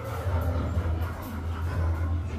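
A steady low rumble on an indoor boat dark ride, with faint soundtrack music over it.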